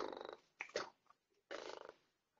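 A person making two short, rattling noises with the voice about a second and a half apart, with a brief sound between them.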